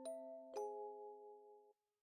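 Quiet, slow background music: soft bell-like chords ring on, a new chord is struck about half a second in, and it fades and cuts off shortly before the end.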